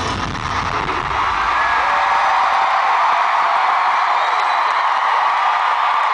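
A large arena crowd cheering and whooping as a live band's music fades out in the first second or two; the cheering then goes on loud and steady.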